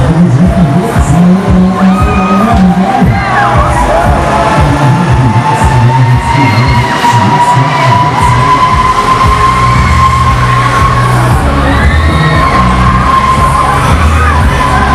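Huss Break Dancer fairground ride running, heard from beneath its platform: loud ride music with a heavy bass and riders screaming, over a machine whine that climbs slowly in pitch.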